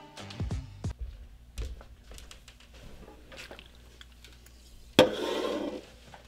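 Faint background music with a few small clicks. About five seconds in, a sharp click is followed by a short, louder rush of breath blown out through pursed lips.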